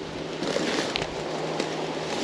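Steady rush of a shallow, rocky river run, with a few faint rustles and crackles of streamside plants brushed underfoot about half a second to a second in.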